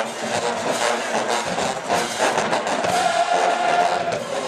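College marching band playing brass and drums, ending on a long held note in the last second or so.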